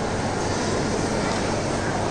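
Steady background noise of a busy indoor public space: a low, even hum under a haze of distant chatter, with no distinct event.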